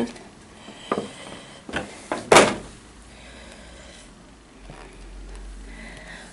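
Clear plastic blister tray of a trading-card box being handled: a few light clicks, then one louder crackle of plastic a little over two seconds in.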